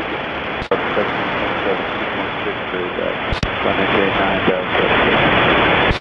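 Air traffic control radio feed: a steady static hiss with a faint, unintelligible voice transmission under it, broken by two sharp clicks, one near the start and one about halfway through.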